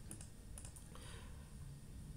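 A few faint clicks from a computer mouse, mostly in the first second, over quiet room noise.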